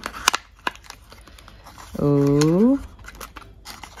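A cardboard advent calendar door being pried open and a small foil-covered box pulled out: a couple of sharp paper snaps near the start, then faint handling of the card. A short drawn-out "oh" about two seconds in.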